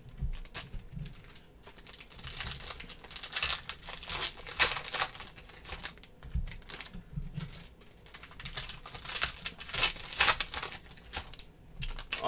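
Trading cards being handled and set down on stacks, with foil card-pack wrappers crinkling: a run of irregular soft clicks and rustles.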